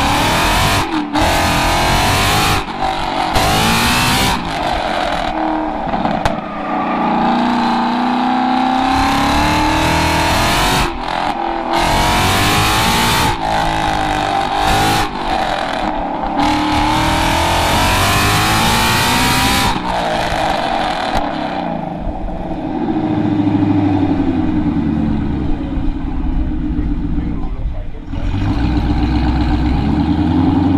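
A Ford Mustang's engine revving up and down again and again through an autocross course, with wind gusting on the microphone mounted on the outside of the car. In the last third the revs sit lower and fall as the car slows.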